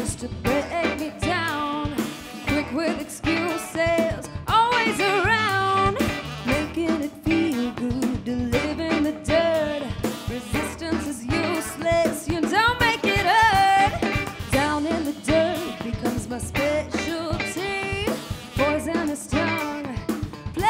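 Live rock band playing a song: a woman singing lead over electric bass, drum kit, saxophone and electric guitar.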